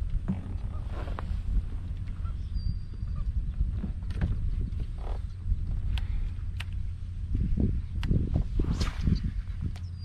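Wind rumbling on the microphone and water lapping against a plastic kayak hull, with scattered light clicks and a run of dull knocks from the boat and tackle in the last few seconds.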